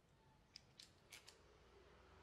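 Four faint, short clicks spread over the first second and a half, from hands handling gear at an airgun shooting bench, reaching for a pellet tin between shots.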